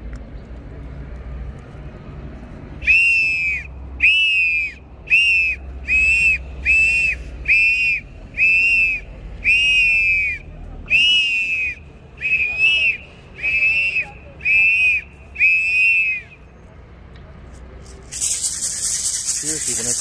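A whistle used in a limpia cleansing ritual, blown in about thirteen short high blasts, roughly one a second, each bending up and then down in pitch. About two seconds before the end, a dense rustling starts: a bundle of branches shaken and brushed over the body.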